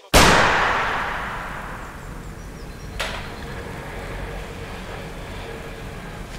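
A single loud bang that rings out and fades slowly over about two seconds, as in a large echoing hall, followed by a sharp click about three seconds in.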